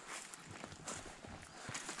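Faint footsteps on a dirt forest path, a few soft steps over a low outdoor hiss.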